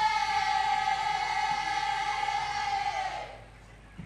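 Ensemble of traditional folk singers holding one long high note in unison, which slides down and dies away about three seconds in.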